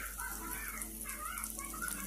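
Spice paste and egg sizzling in margarine in a hot steel wok as a metal spatula stirs, with a few short wavering high tones over the steady hiss.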